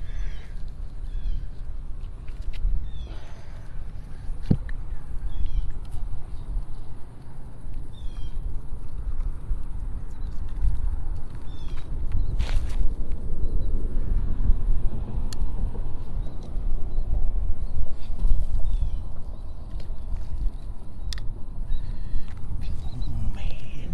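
Wind buffeting the microphone, a steady low rumble, with short high bird chirps every second or so in the first half and again near the end.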